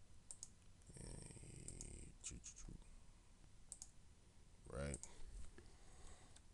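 Scattered clicks of a computer mouse, a dozen or so light, irregular clicks, mostly in the first four seconds. A low murmur of a man's voice comes in between them, with a short, louder vocal sound near the end.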